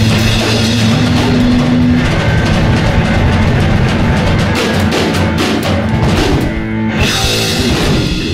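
Live rock band of electric bass, drum kit and electric guitar playing loudly. The cymbals drop out briefly just before the last second, then come back in.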